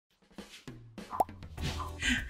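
An edited intro: a short cartoon-style pop that sweeps upward in pitch about a second in, with a few clicks around it and intro music swelling toward the end.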